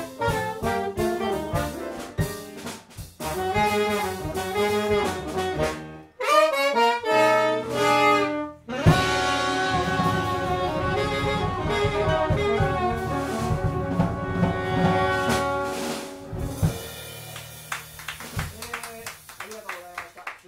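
Live jazz quintet, with alto saxophone and trombone playing the melody over piano, double bass and drums. About nine seconds in the band holds one long closing chord with the drums rolling under it; it cuts off near sixteen seconds and the sound dies away.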